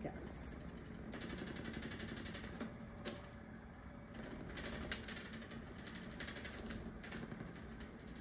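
LifePro Waver vibration plate running at its top speed setting of 99: a fast, steady mechanical rattle with a low motor hum, and a couple of sharp ticks about three and five seconds in.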